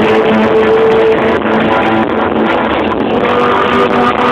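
A rock band playing live: dense, loud music with guitars to the fore and held notes, and no vocal line in these seconds.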